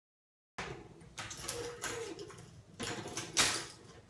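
Intro sound effects: a quick run of about seven short, sharp swishes and hits, starting half a second in, the loudest a little after three seconds.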